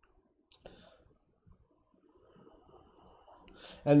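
A mostly quiet pause with a single sharp click about half a second in, followed by a brief hiss and faint scattered small noises; near the end a breath is drawn and a man begins to speak.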